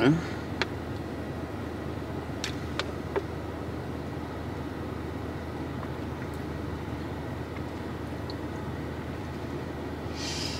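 Steady low rumble of a car's cabin, with a few faint clicks in the first three seconds.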